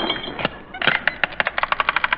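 Radio sound effect of a wallet being opened as a gag: one click, then from about a second in a rapid, even ratcheting of sharp clicks, about nine a second.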